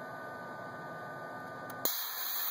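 Steady electrical hum, then near the end a click and a sudden hiss of air as a solenoid valve switches the telescope mount's pneumatic brakes.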